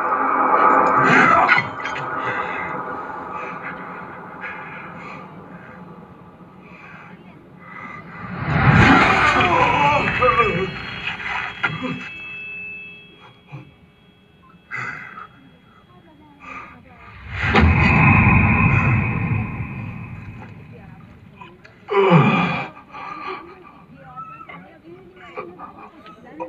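A movie's soundtrack playing in a cinema hall, picked up by a phone: dialogue and background score, swelling loud about eight seconds in and again around eighteen seconds, with a short loud hit near twenty-two seconds.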